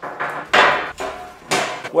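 Heavy steel square-tube frame clanking against a steel plate as it is set down and shifted: a few ringing metal knocks, the loudest about half a second in and near one and a half seconds.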